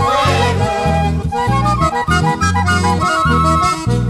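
Instrumental Andean carnival band music: an accordion plays a stepping melody over a strong bass line that changes note about every half second, with no singing.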